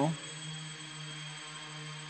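Quadcopter's electric motors and propellers humming steadily in flight, one even low drone with a faint high whine above it.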